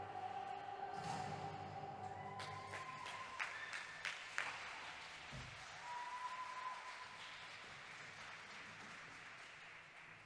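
Figure-skating program music ending about two seconds in, followed by audience applause that gradually fades away.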